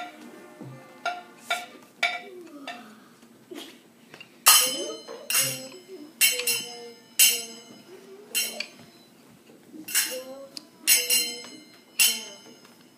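Small hand-held metal percussion instrument struck about a dozen times in an unsteady rhythm, roughly once a second, each a bright clink with a short ring. The loudest strike comes about halfway through.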